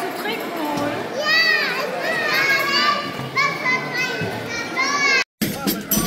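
Children's high-pitched voices calling out and chattering in a large hall, their pitch rising and falling. The sound cuts off suddenly about five seconds in.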